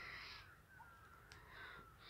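Faint bird calls in near silence: a short call at the start and another near the end.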